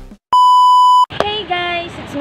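A single loud, steady electronic beep, about three quarters of a second long, that starts abruptly and cuts off sharply.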